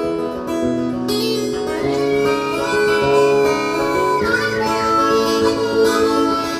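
Acoustic guitar strumming chords while a harmonica comes in about a second in, playing an instrumental break: a long held note that bends down a little past the middle, then more notes over the chords.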